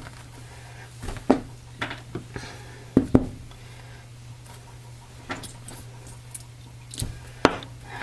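Scattered short knocks and taps, about ten of them, as a clear acrylic soap stamp and a bar of soap are handled, lifted and set down on a paper towel, over a steady low hum.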